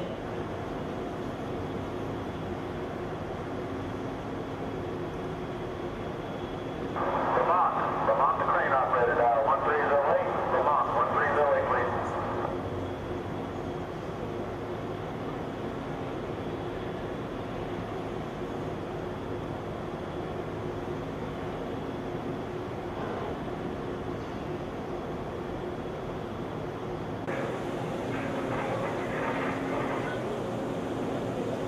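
Steady drone and hum of heavy offshore drilling-rig machinery. About seven seconds in, a louder, muffled burst rides over it for about five seconds.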